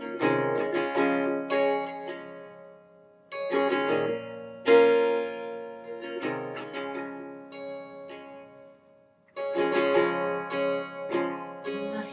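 Solo acoustic guitar playing a slow song intro: four phrases of about three seconds, each opening on a ringing chord followed by a few picked notes that fade away.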